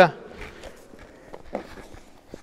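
Soft rustling and light thuds of bare feet and knees on a grappling mat as one person steps in and kneels onto a partner lying on it, with the clearest thump about one and a half seconds in.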